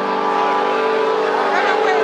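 Electric guitar chord held and ringing steadily through the amplifier, over crowd voices.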